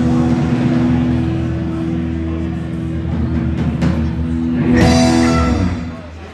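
Live rock band of electric guitars and drum kit playing the close of a song. Chords are held over the drums, with a few sharp drum hits, then a louder final hit about five seconds in that rings out and fades by the end.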